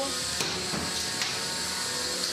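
Beetleweight combat robots' spinning weapons and drives whirring steadily, with two sharp clicks of contact within the first second and a half.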